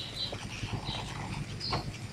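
A few faint clicks from a computer mouse over a low, steady hiss.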